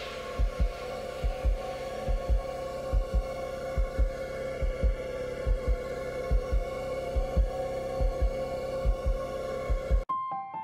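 Heartbeat-like pairs of low thumps, a little more than one pair a second, over a steady sustained drone: a tension sound effect in the soundtrack.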